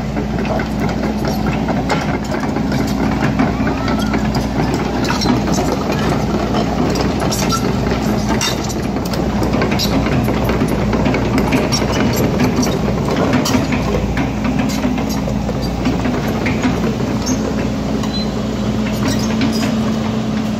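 Heavy machinery running: a steady mechanical drone with a low hum and frequent small clicks and rattles.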